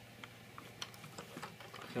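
Small plastic clicks and taps from a Transformers Armada Leader Class Optimus Prime toy being handled and turned around by hand: a scattered run of light clicks, with a man's voice starting right at the end.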